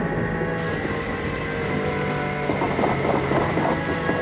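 Storm sound effect: gale-force wind blowing and whistling, over long held ominous music tones; from about two and a half seconds in, a fluttering rattle comes in with the gusts.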